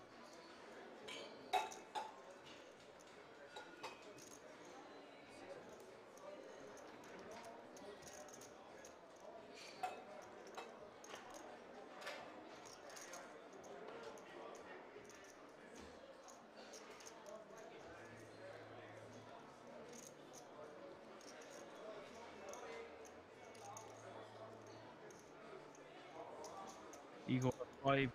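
Faint poker-room ambience: a low murmur of background voices with a few sharp clicks of poker chips now and then.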